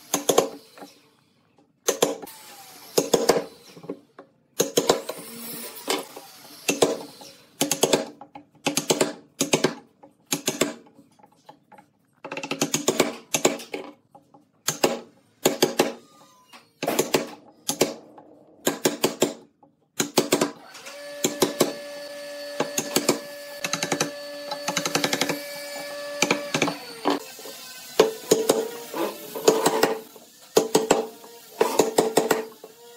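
Steel wood chisel being driven into a pine board to chop mortises: bursts of sharp knocks from blows on the chisel and the blade biting and levering out wood, with short pauses between bursts.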